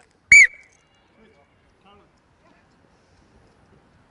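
A single short, high blast on a coach's pea whistle about a third of a second in, the signal for the players to move into new zones.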